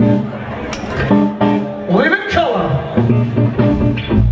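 Live rock band playing: electric guitar and bass over a drum kit, with cymbal strikes, and a note that bends up and back down about two seconds in.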